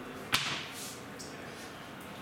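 A single sharp knock or snap about a third of a second in, with a brief ring-off, over quiet room tone.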